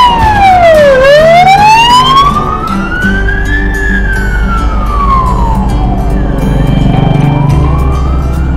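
Ambulance siren in a slow wail, its pitch sweeping down and up again every two to three seconds as the ambulance passes close by. It is loudest in the first few seconds.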